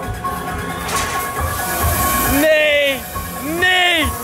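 Spooky Halloween-style music from a drop-tower ride's own speakers, over steady fairground noise. Two long wailing notes rise and fall in the second half.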